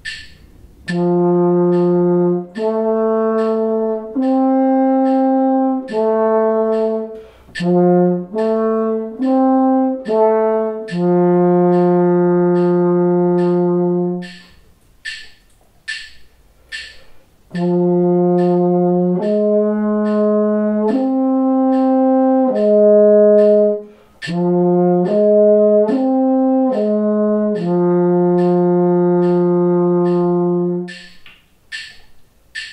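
French horn playing two arpeggio phrases over a steady metronome click: a major arpeggio, then, after four clicks alone, the same arpeggio in minor. Each phrase is four long notes, four short ones and a held closing note.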